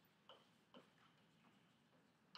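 Chalk tapping faintly on a blackboard while words are written, with two clearer short taps under a second apart.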